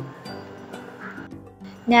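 Background music with steady held notes, quieter than the narration, between spoken sentences. A woman's voice starts near the end.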